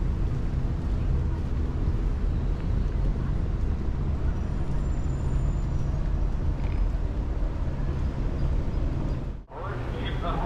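Roadside ambience: a steady low rumble of traffic on the road beside the pavement. It drops out for a moment near the end.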